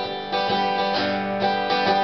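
Acoustic guitar strummed in a steady rhythm, its chords ringing on between strums.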